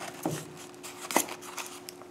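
Faint handling noises of a small cardboard box holding lathe chuck jaws being picked up: a few light rustles and a small sharp click a little past a second in, over a faint steady hum.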